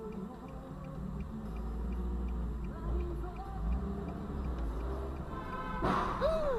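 Music playing inside a car's cabin, with a light regular ticking a few times a second. Just before the end comes a sudden crash as two cars collide.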